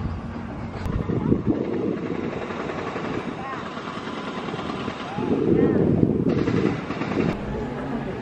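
Wind buffeting an outdoor microphone in gusts, strongest about a second in and again from about five to seven seconds, over faint voices of people in the distance.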